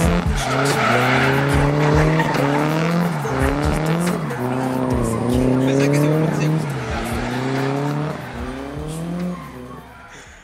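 Drift car's engine held high in the revs, its pitch climbing and dropping back about once a second as the throttle is worked, over the squeal of sliding tyres. The sound fades away in the last couple of seconds.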